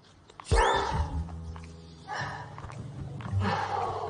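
Comedy sound effect: a quick springy glide up and back down in pitch about half a second in, followed by a low steady hum.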